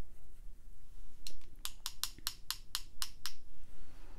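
Paintbrushes tapped against each other to flick green watercolour onto the paper as splatter: a quick, even run of about a dozen light clicks, about six a second, starting a little over a second in.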